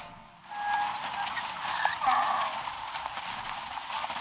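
A donkey braying over a steady background of outdoor ambience from a television soundtrack.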